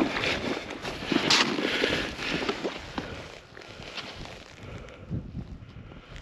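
Irregular crunching and scuffing in snow, busiest in the first three seconds with one sharp crunch just over a second in, then quieter, with wind noise on the microphone.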